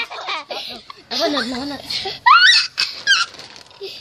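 Children laughing and squealing, with a high rising shriek a little over two seconds in.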